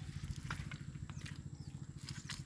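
Faint, low, rapid and steady throb of an engine running in the background, with a few light clicks.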